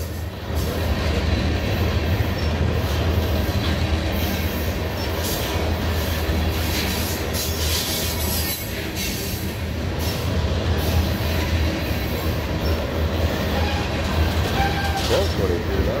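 A train of railroad tank cars passing at close range: steel wheels rolling on the rails in a steady low rumble, with brief sharper high noises every few seconds.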